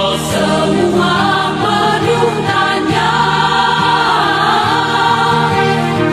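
Choir singing a Christian praise song, several voices together, with a steady low note held beneath them.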